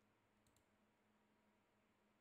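Near silence with a faint low hum, broken by a quick double click of a computer mouse about half a second in.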